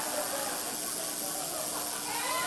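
Steady electrical hiss, with a thin high tone held under it, from the high-voltage apparatus that lights a fluorescent tube through a person's body.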